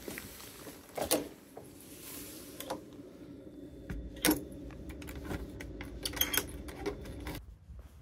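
Keys jangling with several sharp metallic clicks as a front door's deadbolt is locked with a key; the loudest click comes about four seconds in, with a quick run of clicks near the end.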